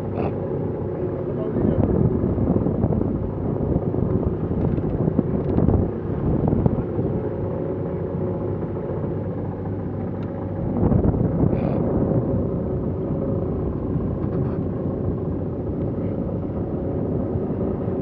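Yacht under way at sea: wind buffeting the microphone and water rushing along the hull, swelling louder a few times, over a steady low drone.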